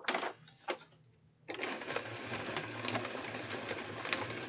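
Hand-cranked Xyron adhesive machine feeding paper sheets through its rollers. After a single click and a short quiet gap, a steady mechanical churning with faint ticks starts about a second and a half in as the crank is turned.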